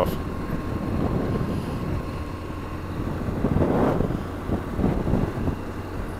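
BMW R1200GS Adventure's boxer-twin engine running steadily as the motorcycle rides along a dirt road, with wind noise on the helmet microphone.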